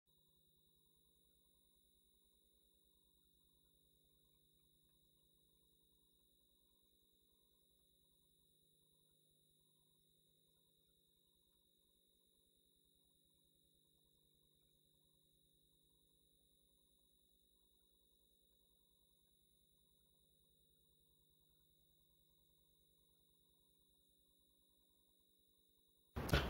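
Near silence: only a very faint, steady electronic tone and hum from the audio feed.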